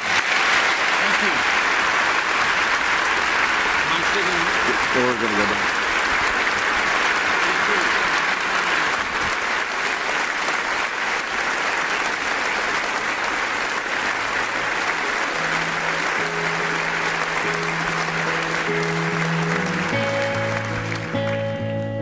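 A large congregation applauding, a long, steady ovation. Near the end the worship band starts playing, first a held low note, then sustained chords about 20 seconds in.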